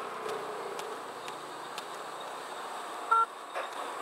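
Steady street traffic noise, with a short high beep about three seconds in.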